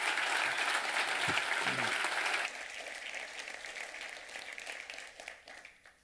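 Audience applauding, loud for the first two and a half seconds, then dropping off and fading out.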